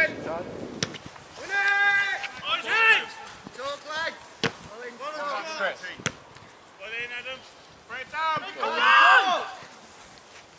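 Players' voices shouting short calls across an open football pitch, the loudest just before the end, with a few sharp thuds of the ball being kicked in between.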